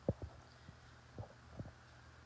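Handling noise: four soft, low thumps, the first the loudest, as a coffee mug is picked up and raised, over a faint steady hum.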